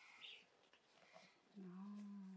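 Near silence in a pause between speech, then near the end a faint, brief, low closed-mouth 'mm' from a person.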